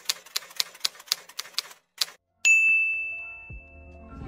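Typewriter sound effect: a quick run of about a dozen key clacks over two seconds, then a single bell ding about halfway through that rings on and slowly fades.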